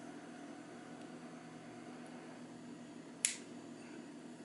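A single short, sharp metallic click a little over three seconds in as the IM Corona Magie pipe lighter's hinged cap snaps shut over the flame, over a faint steady background hum.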